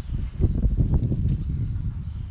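Wind buffeting an outdoor microphone: an uneven low rumble with no speech over it.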